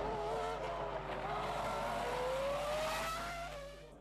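Formula One racing car engine accelerating, its pitch climbing steadily for about three seconds before fading away near the end.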